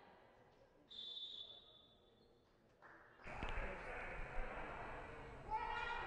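Sports hall ambience during a break in play: faint at first, with a brief high tone about a second in, then suddenly louder about three seconds in with a steady crowd-and-hall noise and indistinct voices.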